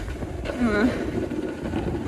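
Wind buffeting a handheld phone's microphone as a steady low rumble, with a brief vocal sound from the snowboarder about half a second in.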